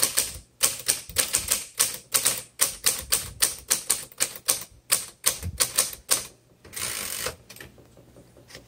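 Manual typewriter, a 1950 Royal Quiet Deluxe, typing at a steady clip: sharp type-bar strikes at about five a second. Near the end the strikes stop and a longer rasping sound of about half a second follows.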